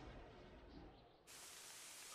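Near silence: a faint hiss.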